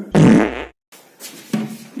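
A short, loud, buzzy fart-like burst lasting about half a second. Then the sound cuts out abruptly.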